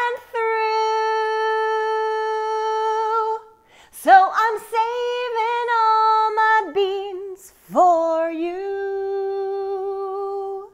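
A woman singing a cappella with no accompaniment: a note held for about three seconds, a short run of sung words, then another long held note near the end.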